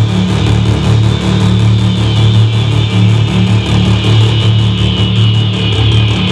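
Loud live electronic music from synthesizers and sequenced drums: a heavy, pulsing bass line under a fast, even rhythm of high ticks.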